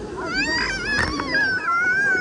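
A toddler's long, high-pitched squeal, wavering up and down in pitch, starting just after the beginning, over a background wash of pool water.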